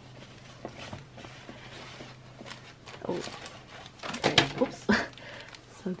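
Clear plastic packaging crinkling and rustling as a sleeved set of embroidered patches is handled and drawn out of a fabric pouch, loudest about four to five seconds in, over a faint steady low hum.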